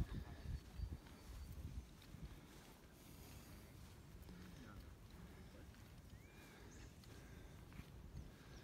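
Quiet outdoor background with a few low, muffled thumps in the first two seconds, then faint steady ambience with one faint high chirp about six seconds in.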